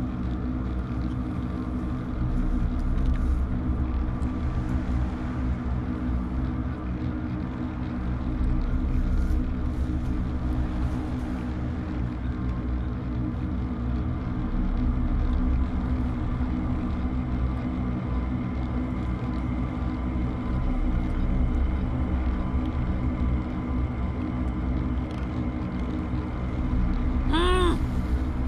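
A low, steady suspense drone from the film score: several sustained tones held over a deep rumble, slowly swelling and easing.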